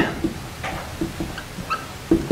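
Dry-erase marker squeaking on a whiteboard in a few short strokes while words are written.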